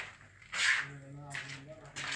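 A short swish about half a second in, then a person's voice held on one low, steady pitch for about a second.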